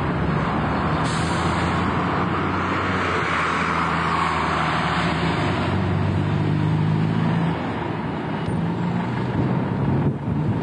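A diesel bus engine running close by with a steady low hum, with a hiss of air for a few seconds starting about a second in, typical of a bus's air brakes or doors.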